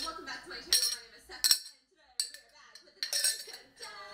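A clear glass tumbler clinking and tapping as it is handled, with a few sharp clinks that ring briefly, in two bursts, and a short quiet gap in between.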